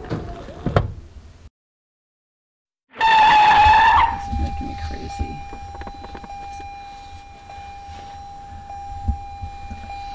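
A car's electronic warning tone inside the cabin: a loud, slightly rising tone for about a second, then a steady tone that keeps sounding even though everything in the car is turned off. A couple of sharp knocks come just before, near the start.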